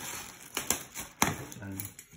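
Scissors snipping open a thin plastic bag: a few sharp snips with light plastic crinkling between them.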